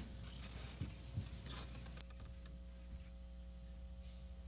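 Faint room noise with a few small clicks in the first two seconds, then a steady low hum.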